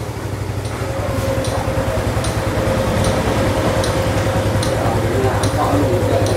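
Honda Super Cub 110's small single-cylinder four-stroke engine idling steadily in gear, with a steady faint whine joining about a second in and a light tick repeating roughly once a second.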